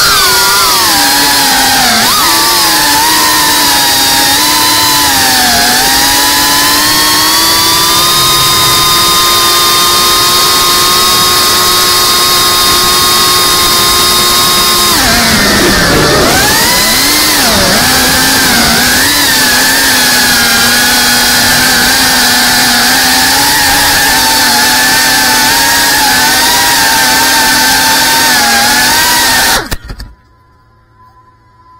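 FPV quadcopter's brushless motors and propellers whining, the pitch rising and falling with the throttle. It holds steady for several seconds, drops sharply about halfway through, climbs back, and cuts off suddenly at the very end.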